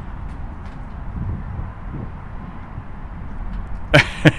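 Steady outdoor background noise in a parking lot: a low rumble with a faint hiss and no distinct events.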